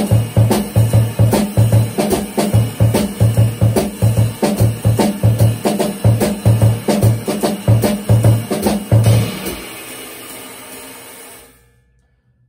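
Jazz drum kit playing a syncopation exercise: bass drum hits carry the rhythm's melody while the left hand fills every space between them on the snare, under steady cymbal strokes. The playing stops about nine and a half seconds in and the cymbals ring out.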